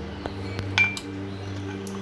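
Wooden muddler pressing and knocking against the bottom of a glass as mint leaves and lemon are crushed, giving three sharp clinks, the loudest a little under a second in. A steady low musical drone runs underneath.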